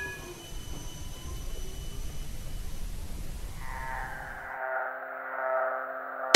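City tram passing, the low rumble of its wheels with the last ring of its bell fading. About four seconds in a held musical chord fades in and the rumble cuts out.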